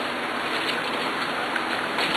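Steady rain, heard as an even hiss with a few faint ticks.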